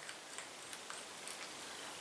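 Quiet room with a few faint, light ticks from a cosmetic tube and its applicator wand being handled while the liquid product is dabbed onto the back of the hand.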